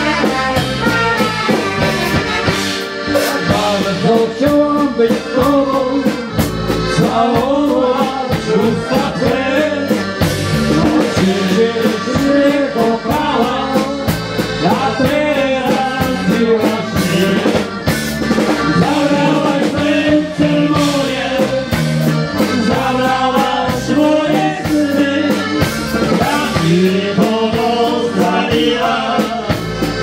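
Band music for dancing: a steady beat under a melody on instruments, playing without a break.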